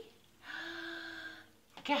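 A woman's voice holding one steady, unchanging note for about a second, a sung 'ooo' as she lifts a puppy in play.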